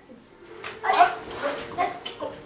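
A person's short wordless vocal cries, several in quick succession.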